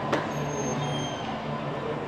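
Steady hubbub and low rumble of a busy stadium tunnel, with one sharp knock just after the start.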